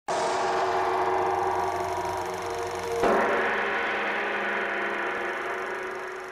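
Two loud gong-like metal strikes, about three seconds apart, each ringing with several steady tones and slowly fading.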